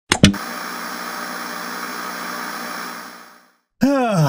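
Two sharp clicks, then a steady hiss of static-like noise that fades out about three seconds in.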